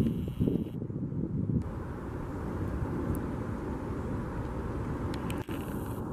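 Wind buffeting the microphone: a gusty low rumble that settles into a steadier rush about a second and a half in.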